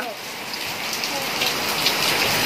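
Rain falling steadily on a wet paved courtyard: an even hiss with small drops splattering on the tiles and puddled concrete.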